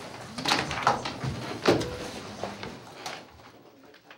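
A few sharp knocks and bumps of people moving about a room, fading out toward the end.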